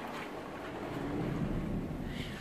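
A steady low rumble and hiss while walking through a building's entrance doors into a large lobby, swelling about halfway through, with a faint footstep tick near the start.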